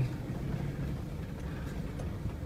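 A car driving slowly on a rough dirt track, heard from inside the cabin: a steady low rumble of engine and road noise.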